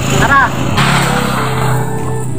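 A motor vehicle engine running past on the road, its noise swelling about a second in, with a brief shouted voice just before.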